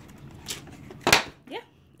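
A single sharp click about a second in, the loudest sound, with a fainter click before it, then a brief spoken "yeah".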